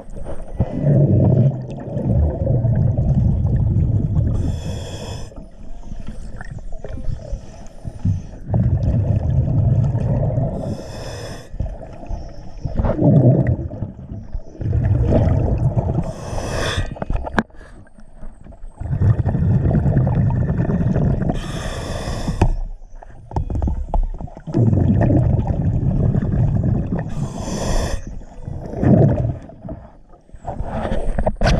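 A diver breathing through an underwater regulator: a short hiss of each inhale, then a longer low rumble of exhaled bubbles, repeating about every five to six seconds.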